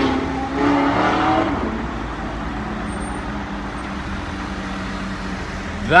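Exhaust note of a 2014 Audi R8 with aftermarket iPE exhausts accelerating close by, heard from inside another car. The note dies away about a second and a half in, leaving a steady traffic hum.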